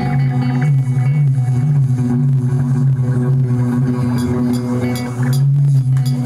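Live band music: electric guitars, electric bass and a hand frame drum playing over a steady low drone.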